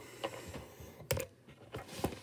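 Light plastic clicks and taps of a toy action figure and its small plastic blaster being handled and set on a wooden tabletop, with one sharper click about a second in.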